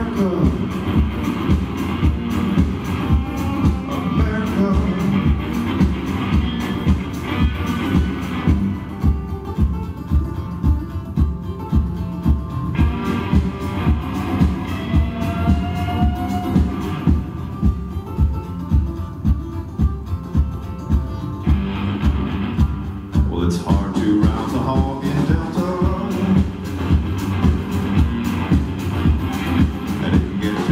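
Live band music: acoustic guitar strumming over a drum kit keeping a steady beat.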